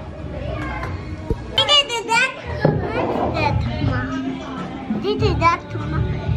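A young child's high voice calling out, loudest about two seconds in and again near the end, over background music.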